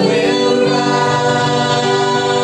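A man and a woman singing a worship song together as a duet over keyboard accompaniment, holding long sustained notes.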